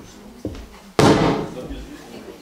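A light knock, then about a second in a sudden loud thump with a short rumbling tail, picked up close on a stage microphone: handling noise as the microphone and its stand are knocked.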